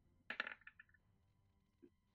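A die being rolled: a quick, faint run of light clattering clicks starting about a third of a second in and dying away within about half a second.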